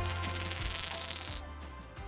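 A metal coin spinning and wobbling down on a hard surface, ringing and rattling faster as it settles, then stopping abruptly as it falls flat about one and a half seconds in. Background music plays underneath.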